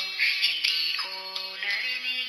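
Autotuned solo voice singing a Tagalog love ballad over a pre-recorded minus-one backing track.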